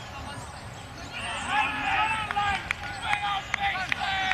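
Voices shouting across a rugby pitch during open play, loud calls starting about a second in, with a few sharp ticks among them.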